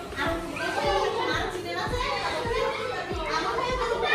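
Children playing and chattering, with music in the background and frequent light knocks.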